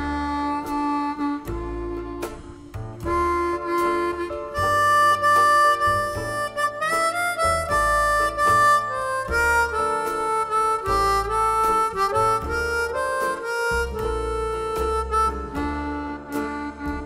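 Harmonica played into a hand-cupped vocal microphone: a slow blues melody of held notes, some sliding up in pitch, with the hands shaping the tone. Underneath runs an accompaniment with a regular bass line.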